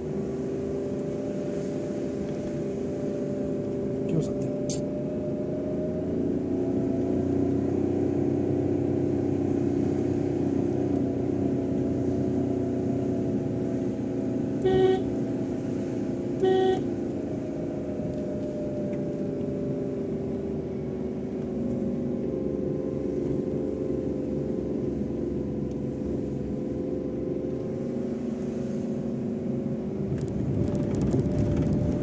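A car's engine running steadily, heard from inside the cabin, its pitch drifting slightly as it drives. Two short horn toots sound about 15 and 16.5 seconds in and are the loudest events.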